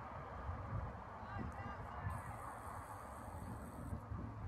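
A few faint bird calls, about a second in, over a steady low rumble.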